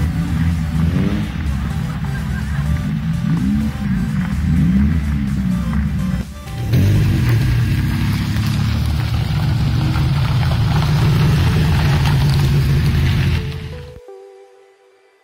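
Engines of vintage open roadsters revving, their pitch rising and falling, then running steadily after a brief break about six seconds in, with music underneath.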